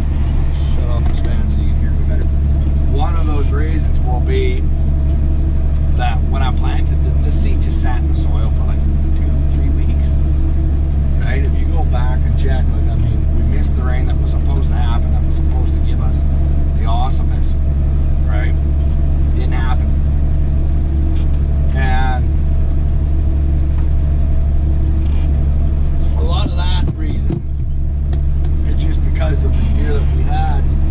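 Tractor engine running steadily from inside the cab, a constant low drone with no change in speed.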